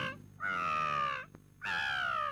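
Baby crying: two wailing cries in a row, the second falling in pitch.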